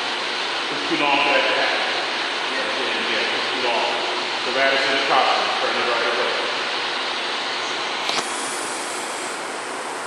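Brief, indistinct voices over a steady background hiss. There is a sharp click about eight seconds in, after which the hiss changes in tone.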